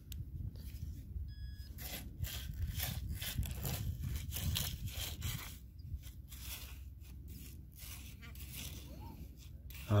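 Hands and a pinpointer scraping and crunching through coarse sand and small pebbles in short, irregular bursts while searching for a small buried target, over a low steady rumble.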